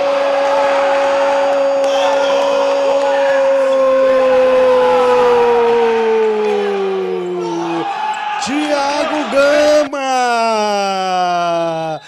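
A Brazilian TV commentator's long drawn-out goal cry, one loud held note that sags in pitch after about six seconds. A second shouted held call with a falling pitch follows near the end.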